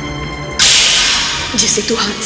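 Sustained dramatic background music. About half a second in, a sudden loud whooshing sound-effect hit cuts across it and fades away over about a second, the kind of stinger used to mark a scene change in a TV drama. A woman's voice starts near the end.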